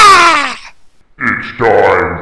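A high voice-like sound glides downward and fades out, then after a short gap a deep, gravelly grunting voice effect begins.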